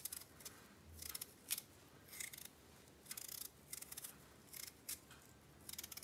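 Small kitchen knife peeling a raw potato by hand: a series of faint, short scraping strokes at irregular intervals as the blade cuts away the skin.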